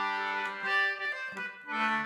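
Maccann duet-system Wheatstone concertina playing two held chords, with a short break between them about a second and a half in.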